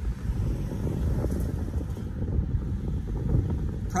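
Wind buffeting the microphone, an irregular low rumble that rises and falls.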